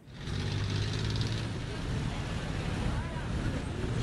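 City street traffic: a steady rumble of vehicle engines and road noise that fades in at the start, with faint voices mixed in.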